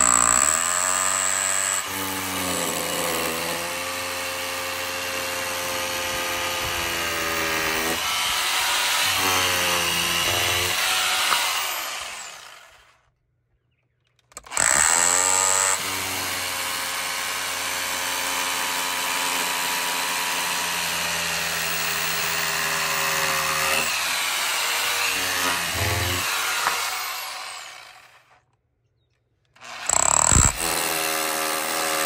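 Corded hammer drill with a long masonry bit boring into brick, run slowly so the soft brick does not break out. It runs twice for about twelve seconds each: the motor winds up, holds steady, then winds down to a stop.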